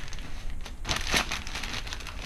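Wrapping paper being torn and crumpled as a gift is unwrapped, in irregular crackles strongest around the middle.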